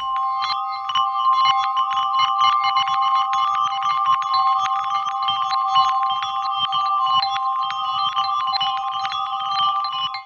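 Glockenspiel sample recorded on a Marantz PMD222 cassette recorder, played back at half speed and run through a Red Panda Particle 2 granular delay. A few chiming tones are held throughout under a rapid patter of short struck notes and granular stutters. It cuts off just before the end.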